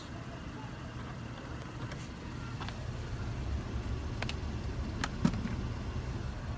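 Steady low hum of a Honda Ridgeline idling, heard from inside the cabin, with a few faint clicks as a USB cable is handled and plugged into the console's USB port.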